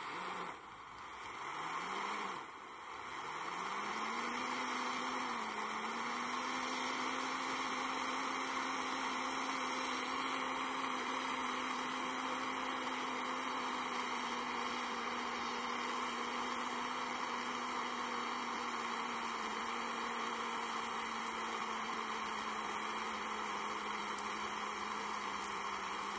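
Small handheld torch burning with a steady hiss and a low hum, melting sealing wax. The hum rises in pitch twice in the first few seconds before it settles.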